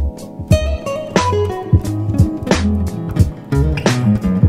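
Nylon-string guitar playing a plucked melody that steps down in pitch, over a backing track with a steady drum beat: a sharp snare about every 1.3 seconds and deep kick-drum pulses.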